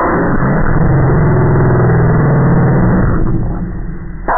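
A spoken voice line played back super slow, dragged down into a deep, drawn-out drone with its words no longer made out. It tails off near the end.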